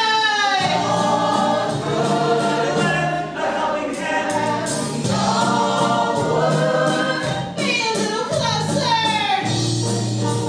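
Stage-musical soundtrack: a chorus of voices singing long held and gliding notes over a steady instrumental accompaniment.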